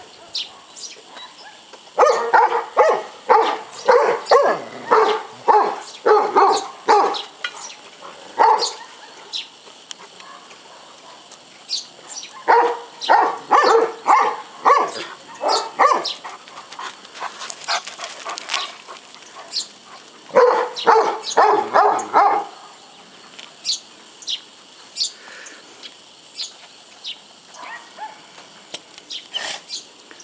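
Large dog barking in three bouts of about two barks a second, with short pauses between the bouts.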